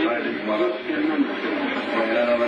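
A man's voice speaking without pause, a television news report played through a TV set's speaker.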